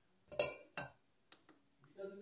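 Stainless steel milk jug clanking twice against the metal of an espresso machine as it is set under the steam wand, sharp metallic knocks with a short ring, followed by a couple of faint taps.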